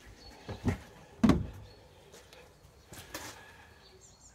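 A few short knocks and bumps, the loudest a little over a second in, with fainter ones about three seconds in, over a quiet background.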